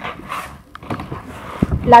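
Rustling and soft scraping of a sheet of EVA craft foam being lifted and slid off a wooden board, with a couple of light knocks, before a word is spoken at the end.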